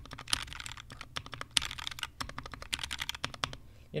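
Typing on an Anne Pro 2 60% mechanical keyboard: a rapid, uneven run of key clicks that stops just before the end.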